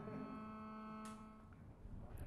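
Faint steady electrical hum, a low buzzing tone with overtones, from an amplified instrument rig; it cuts off about one and a half seconds in.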